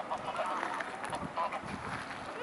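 A flock of geese honking: many short calls overlapping one another.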